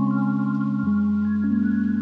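Soft ambient background music: held synthesizer-like chords that change every half second or so, with higher single notes coming in above them.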